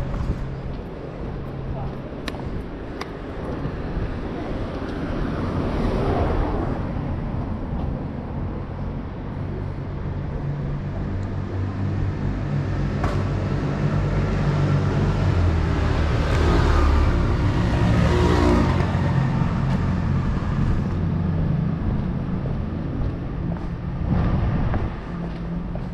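City street ambience with vehicles passing: one swell about a quarter of the way in and a louder, longer pass a little past the middle. People's voices and a few sharp clicks are heard along with it.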